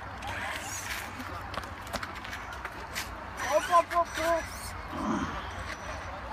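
A person's voice: a few short, high, arched calls about three and a half seconds in. They sit over a steady low rumble and scattered sharp clicks.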